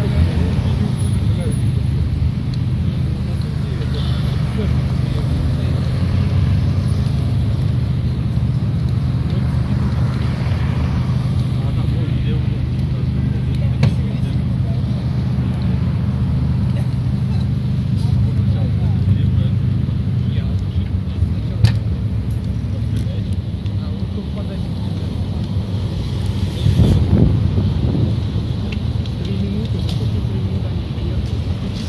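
Steady low rumble of street traffic and idling vehicle engines, with wind on the microphone; it swells as a vehicle passes close about 27 seconds in.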